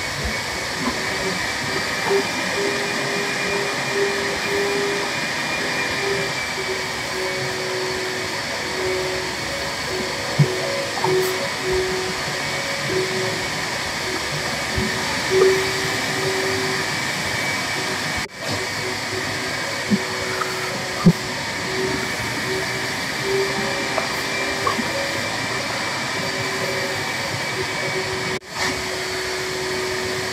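A steady whirring hum with a faint wavering tone running through it, dipping briefly twice.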